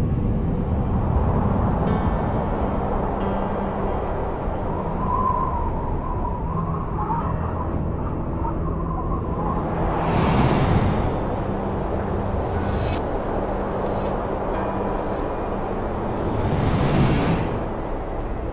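Eerie suspense music with a low drone, under a steady rush of wind that swells into two louder gusts, about ten seconds in and again near the end.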